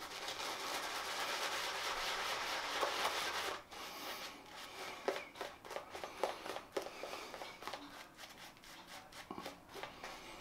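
Silvertip badger shaving brush swirled over lather on a bearded face, a bristly rubbing hiss. It runs continuously for about three and a half seconds, then breaks into softer, separate brush strokes.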